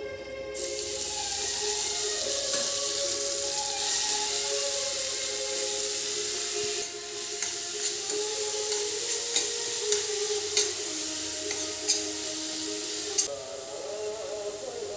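Chopped onion, tomato, ginger and garlic hit hot oil in a stainless steel frying pan and sizzle, starting suddenly about half a second in. From about halfway, a spatula stirring the mixture clicks and scrapes against the pan. The sizzling drops off shortly before the end.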